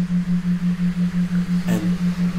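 A low, steady electronic tone pulsing evenly about six times a second. A man's voice says one word near the end.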